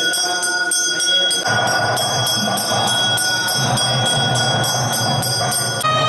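Temple bells ringing steadily during the aarti, struck about three times a second. A lower, rougher sound joins about a second and a half in, and the ringing changes pitch just before the end.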